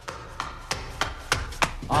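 About half a dozen sharp knocks at an even pace, roughly three a second, in a short break between sung lines of a comic song recording.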